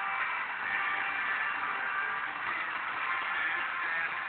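A Degen portable radio's speaker playing a weak, distant FM station from Finland on 107.7 MHz: faint music comes through a steady hiss of static, the sign of a marginal long-distance signal.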